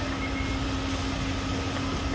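Fire-service vehicle engine running steadily: a constant low hum under a rushing noise.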